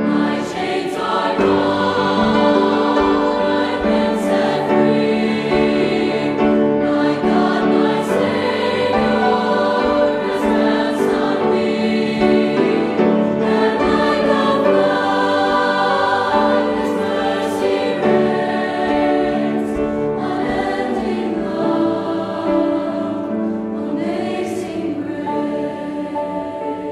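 Mixed choir singing a slow piece in long held chords, growing a little softer near the end.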